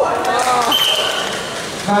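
Voices in a large hall, with a steady high-pitched beep lasting just under a second about two-thirds of the way in.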